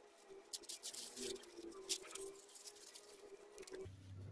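Faint crinkling and rustling of white wrapping being pulled open by hand to free a small ball cactus, in irregular crackles.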